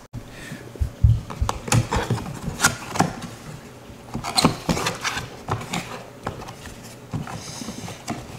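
Cardboard product box being opened by hand: a run of irregular crinkles, scrapes and light taps as the flaps are pulled open and the box shifts on the tabletop.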